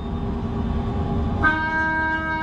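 Long spiralled shofar blown inside a moving Ford Excursion: road and engine rumble in the cabin, then about one and a half seconds in the horn starts a loud, steady held note.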